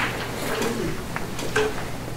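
Squeaky chair creaking, with two short squeaks over a low steady room hum.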